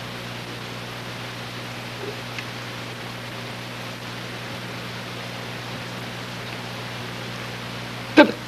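Steady hiss with a low electrical hum underneath, the background noise of an old recording, with two faint clicks about two seconds in.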